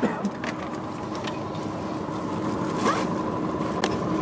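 Fabric rustling and scraping as a hand-held camera brushes against berth curtains and clothing in the aisle of a sleeper bus, with a few sharp clicks, over a faint steady hum in the bus cabin.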